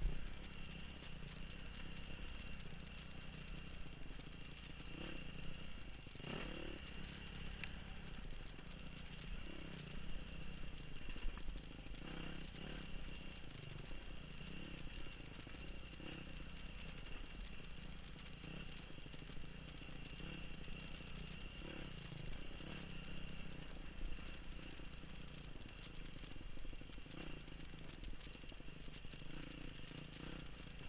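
Dirt bike engine running steadily under way on rough ground, heard from the rider's helmet, with rattles and a few brief knocks from the bike over bumps.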